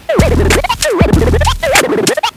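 DJ turntable scratching over a hip hop beat: a record sample dragged back and forth, its pitch sweeping up and down several times a second. Underneath runs a beat with a low bass, which cuts out briefly near the start and near the end.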